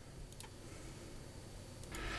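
A faint computer-mouse click about half a second in, and a couple more light ticks near the end, over a low steady room hum.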